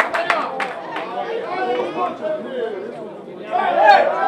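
Spectators chatting near the microphone, several voices talking over one another. A few sharp clicks come in the first second.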